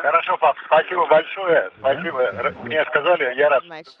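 Speech over a narrow radio link with a thin, telephone-like sound, ending in a laugh.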